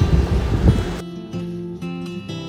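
Background music of acoustic guitar strumming, cutting in sharply about a second in over general background noise.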